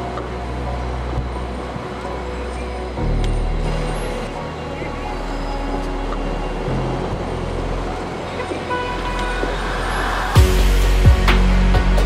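Background music with long held bass notes, over a haze of city and traffic noise. The music gets louder near the end.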